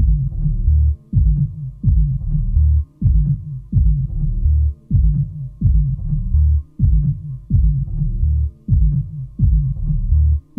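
Electronic dance music from a DJ mix: a deep, throbbing bass pulse repeats about once a second, each hit sliding down in pitch, over a faint steady drone. The brighter, higher parts of the track drop out right at the start, leaving the bass throb alone.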